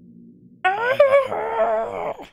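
A woman's drawn-out, wavering, high-pitched whine through clenched teeth, a cringing groan of distress starting about half a second in.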